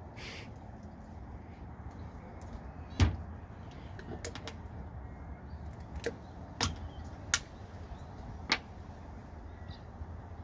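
A few sharp knocks and taps of bottles and jars being handled at a table, the loudest a thud about three seconds in, the rest lighter clicks spread over the following seconds, over a low steady background.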